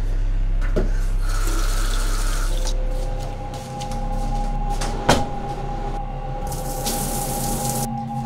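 Water running from a bathroom tap in two spells, with a sharp knock about five seconds in, over a low steady hum.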